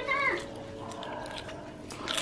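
A cat gives one short meow at the start, then a few faint light clicks.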